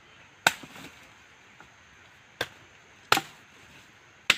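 A machete blade chopping into a wooden branch: three sharp chops, one about half a second in and two more close together near the end.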